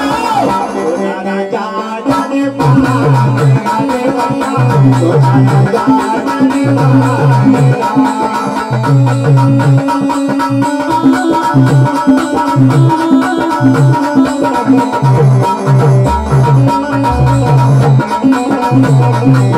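Live amplified Indian devotional bhajan music: a dholak drum keeps a steady rhythmic beat under an electronic keyboard melody, with a man's singing voice in the first couple of seconds.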